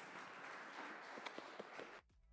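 Audience applauding faintly and steadily, with a few sharper individual claps standing out near the end.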